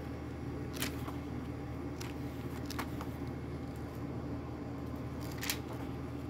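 Pages of a thick paper coloring book being leafed through by hand: a few short paper flicks and rustles over a steady low hum.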